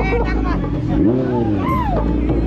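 Kawasaki Z900 inline-four engine running with a steady low hum under street crowd voices. Near the end a high voice rises and falls.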